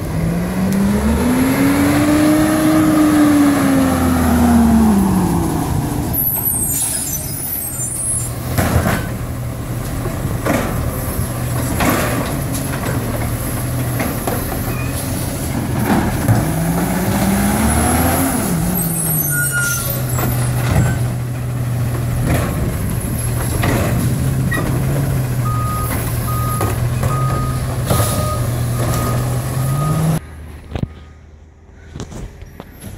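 Labrie side-loading garbage truck working a collection stop: its diesel engine revs up and back down twice as the automated arm grips and lifts a trash cart, then settles to a steady idle. Sharp knocks and bangs of the cart being dumped and set down are interspersed, along with two hisses of air brakes. A faint repeated beep sounds over the last few seconds.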